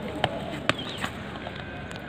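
A few sharp clicks, the loudest about 0.7 s in, over steady open-air background noise with brief high chirps.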